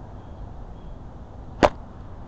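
A single sharp click about one and a half seconds in, over a low steady rumble.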